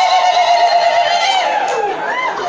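Several high-pitched voices holding a long cry, one pitch held steady and sliding down near the end, amid cheering.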